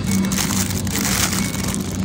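Thin clear plastic produce bag of bell peppers crinkling as it is grabbed and handled, over a steady low hum.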